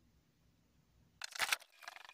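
Near silence, then a brief sharp noise about a second and a half in, followed by acoustic guitar strumming that starts near the end.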